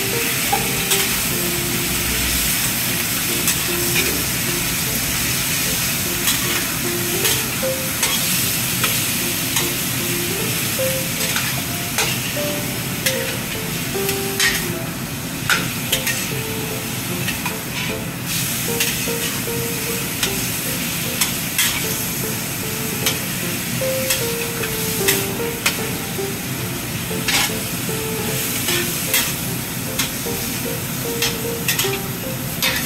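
Pork shoulder cubes and ginger slices sizzling steadily in a stainless steel wok as they are stir-fried, with frequent clicks and scrapes of a metal spatula against the wok.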